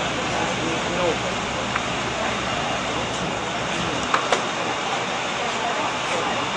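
Steady rushing background noise with faint, indistinct voices talking. Two small clicks come a little after four seconds in.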